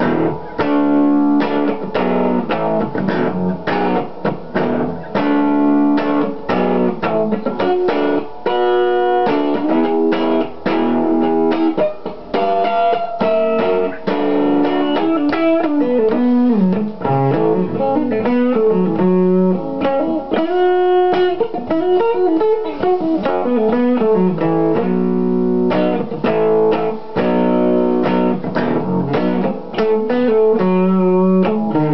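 Electric guitar played through a breadboarded booster circuit on a homemade pedal-prototyping rig: a continuous run of picked notes and chords, with several notes gliding in pitch around the middle.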